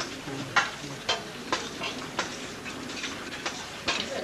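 Spoons clinking and scraping on plates as people eat: a string of sharp, uneven clicks about twice a second.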